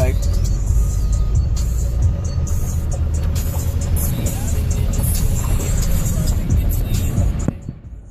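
A car driving through flood water, heard from inside the cabin: a steady rush and splash of water thrown against the body and underside, over the low noise of the car. It sounds like being in a fish tank, and it drops away suddenly near the end.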